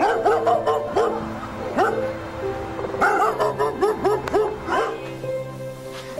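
Gordon setter puppy yipping in a rapid series of short, high calls, each falling in pitch, dying away about five seconds in. Background music plays under it.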